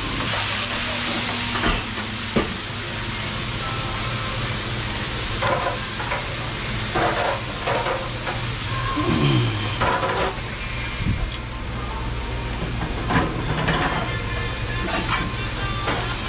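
Commercial kitchen sounds: a steady sizzling hiss over the low, constant hum of kitchen equipment, with scattered clinks and knocks of pans and utensils.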